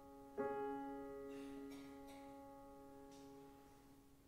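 Grand piano playing a soft, slow introduction: a chord struck about half a second in, left to ring and slowly fade.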